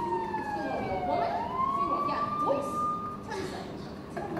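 Police siren sound effect wailing through the theatre: one slow fall and rise in pitch, then it holds steady and cuts off about three seconds in, signalling the police arriving at the house.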